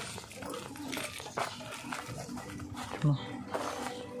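A dog barking, with people talking in the background; a brief low bump about three seconds in is the loudest sound.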